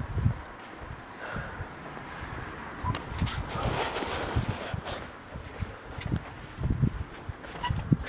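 Footsteps on a tiled floor and the rustling of a waterproof jacket held close to the microphone while walking: irregular low thumps with rustling between them and a sharp knock near the end.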